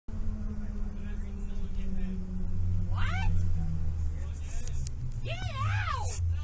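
Low steady rumble of a moving bus heard from inside, with short high wavering vocal cries about three seconds in and again near the end.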